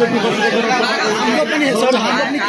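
Speech only: several voices talking over one another at close range.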